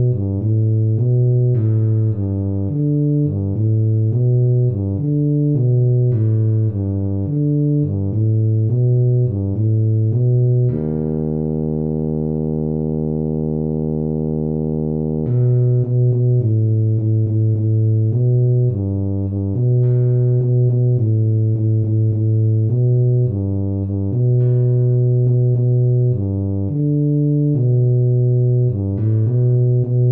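Tuba part played back from the score at half speed: a low melody in short, bouncing notes, with one long held low note about a third of the way in.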